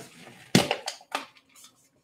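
Small plastic paint cups clicking and knocking together as one is pushed down inside another: a sharp click about half a second in, then two lighter ones shortly after.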